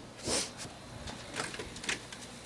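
A dog pawing a door open: a brief scrape about a quarter second in, then two sharp latch clicks in the second half.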